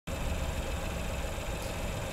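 Steady low rumble of a car engine idling.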